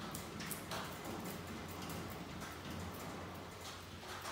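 Uncapping tool scraping wax cappings off a honeycomb frame: soft scratching with a few light ticks, over a steady low hum.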